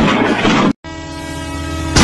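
A loud, noisy sound cuts off abruptly, and after a brief gap a train horn sound effect sounds: one steady, many-toned blast that grows louder toward the end.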